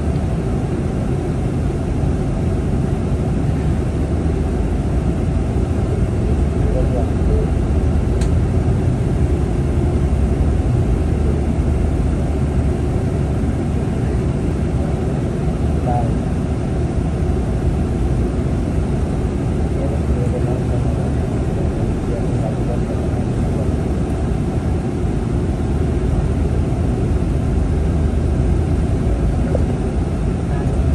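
Steady low rumble inside a moving city bus: engine drone and road noise heard from a passenger seat.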